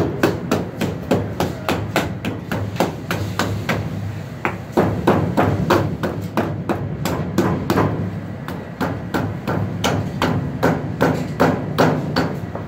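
Meat cleaver chopping through a carcass's backbone and ribs: a quick, steady run of sharp chops, about four or five a second.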